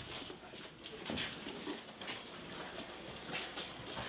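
Faint rustling and scattered clicks of gear and boots as troops in combat equipment shuffle and move in a small metal-walled room.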